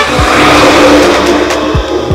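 Heavy dump truck driving past close by: a loud rush of engine and tyre noise with a steady low hum, easing off toward the end.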